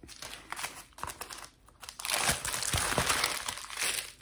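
Plastic postal mailer and foam wrap crinkling and rustling as the parcel is opened and a foam-wrapped item is pulled out, with a short lull about a second and a half in.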